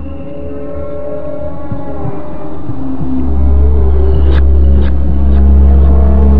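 Dark cinematic trailer drone: several held tones swell steadily louder, then a heavy deep bass rumble comes in about three seconds in, with a couple of sharp hits near the end.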